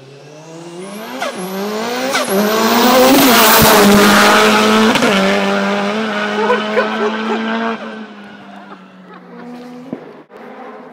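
Hill-climb race car approaching at full throttle, its engine note climbing and dropping with quick upshifts, loudest as it passes about three to four seconds in, then fading away at a steadier pitch.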